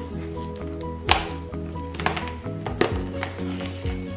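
Background music: a held bass under a melody of short stepped notes, with a sharp percussive hit about once a second.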